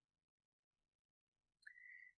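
Near silence, then near the end one faint, brief high tone that rises quickly and holds steady for about half a second.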